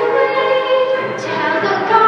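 Two young girls singing a duet into microphones, holding long sung notes.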